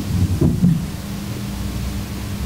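Steady low electrical hum and rumble on the recording during a pause in speech, with a short faint murmur about half a second in.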